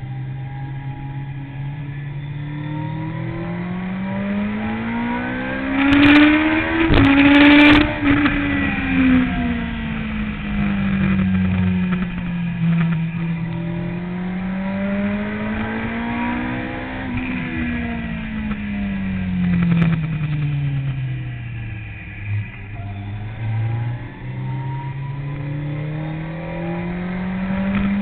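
Sport motorcycle engine heard from an onboard camera, its revs rising and falling in long smooth sweeps as the bike accelerates and slows through corners. A couple of seconds of loud rushing noise come about six seconds in.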